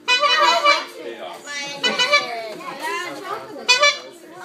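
Children's voices: overlapping high-pitched shouts and chatter of kids playing.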